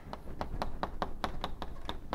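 Chalk tapping and scratching on a blackboard while writing: a quick run of sharp ticks, about six a second.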